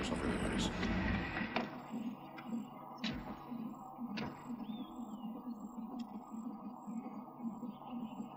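A vehicle's engine rumbles for the first second and a half and then drops away. Two heavy door thumps follow about three and four seconds in, over a faint, steady, pulsing background.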